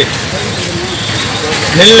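A man speaking Tamil pauses for about a second and a half, then resumes near the end. Under the pause lies a steady street murmur of traffic and faint background voices.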